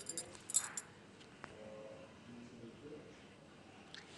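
A few light clinks of a ceramic tea cup being handled, about half a second in, with one more small click shortly after, in an otherwise quiet room.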